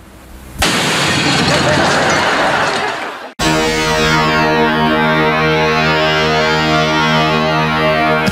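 A sudden loud blast from gas left on in an unlit oven catching light. It lasts about three seconds and cuts off abruptly. A held music chord follows, with a whoosh sweeping down and back up through its upper tones.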